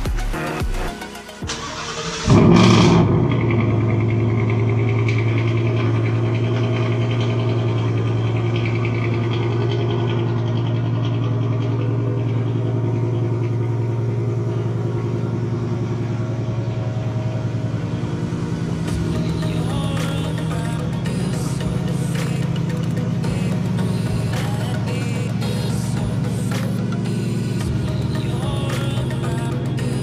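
Ford Mustang GT's 5.0 L Coyote V8 starting about two seconds in with a loud burst, then idling steadily.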